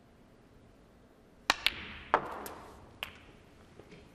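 Snooker balls at play: the cue tip strikes the cue ball about one and a half seconds in, followed by a run of sharp clicks and a louder knock as the balls collide and the pink is potted. About five distinct clicks over a second and a half in a quiet arena.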